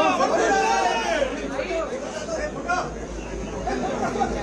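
Indistinct chatter of several voices talking over one another, with no single clear speaker.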